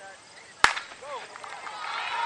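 A single sharp crack of a starter's pistol about half a second in, signalling the start of a cross-country race. Shouts and crowd cheering follow and swell toward the end.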